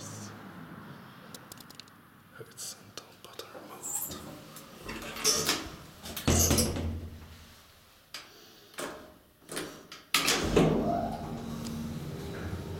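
Elevator doors being handled: a series of knocks and clanks. About ten seconds in, a steady low hum sets in.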